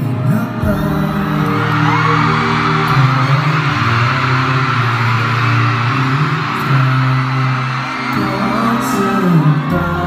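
Live performance of a Thai-language pop song: male vocalists singing into handheld microphones over the instrumental backing, the lead line passing from one singer to another partway through.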